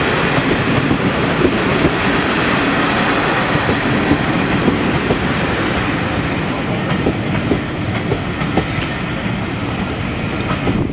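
A train of heritage passenger coaches rolling past close by, wheels clattering rhythmically over the rail joints, with short clicks and a steady rumble that slowly grows quieter as the train draws away.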